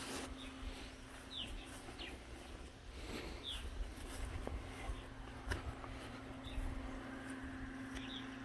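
Faint outdoor ambience: small birds chirping now and then in short, falling notes. Beneath them run a faint steady hum and a low rumble.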